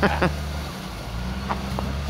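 Lifted Jeep Cherokee's engine running steadily at low revs as it drives slowly across snow, with two faint short ticks about a second and a half in.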